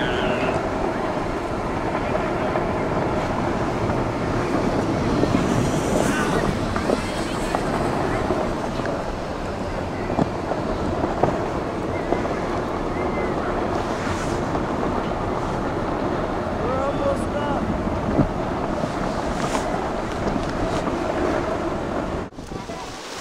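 Steady rushing noise of a snow tube being pulled up a tubing-hill tow rope: the tube sliding over groomed snow and wind on the microphone, with faint distant voices of people on the hill.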